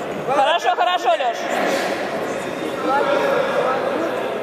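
Voices in a large reverberant hall: a general background of talk, with one voice standing out loudly for about a second just after the start.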